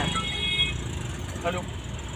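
Steady low rumble of a car's engine and road noise heard from inside the cabin as the car moves slowly. A thin high tone is heard in the first moment, and a faint short voice comes about one and a half seconds in.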